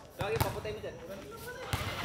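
A basketball bouncing a few times on a hard court.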